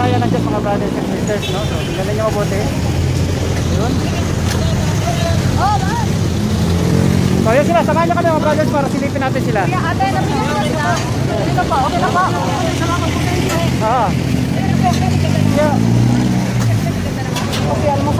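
City street traffic with vehicle engines running, making a steady low hum, and people talking over it through the middle stretch.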